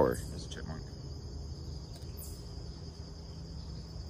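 A chorus of insects such as crickets chirring steadily in woodland, a high continuous sound, over a faint low rumble.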